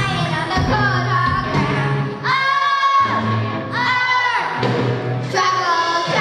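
A children's rock band playing live, with young girls singing over electric guitars, drums and keyboard. Twice the band drops out, leaving a held sung note on its own, then comes back in.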